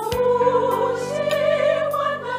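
Background music: singing voices hold long notes with vibrato over a sustained instrumental accompaniment.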